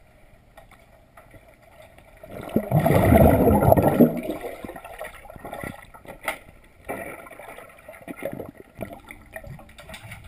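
Muffled underwater pool sound picked up by a submerged camera: water gurgling and sloshing, with a loud rush of bubbling from about two to four seconds in, then a few sharp knocks and scattered gurgles.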